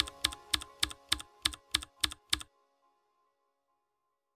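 Typing sound effect for on-screen text: nine evenly spaced keystroke clicks, about three a second, over faint music, stopping about two and a half seconds in.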